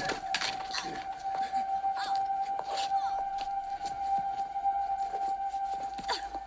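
Film soundtrack: a single high music note held steadily throughout, over scattered short knocks and scuffing noises of a physical struggle.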